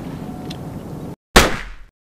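Steady background noise cuts to silence about a second in, then a single loud impact hit, a trailer-style sound effect, strikes and fades out within half a second.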